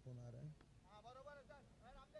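Faint voices talking.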